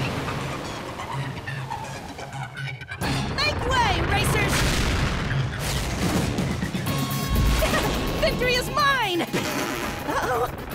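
Cartoon sound track of spaceships launching: music under rocket-engine booms and rushing noise, with short wordless falling shouts about four seconds in and again near the end.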